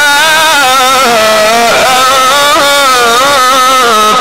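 A male Quran reciter in the Egyptian mujawwad style, amplified through a PA system, holds one long melismatic phrase. His pitch wavers in ornaments, dips about halfway through and climbs again.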